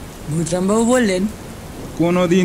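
Steady rain ambience, a storm sound effect laid under the narration, with a voice speaking one word briefly near the start.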